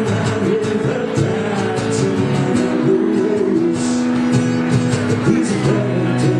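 Live acoustic song: a steadily strummed acoustic guitar with a man singing, holding a long note through the middle.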